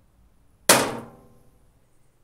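A single sharp hammer blow on the stainless-steel solar-cooker frame, about two thirds of a second in, with a short ringing tail.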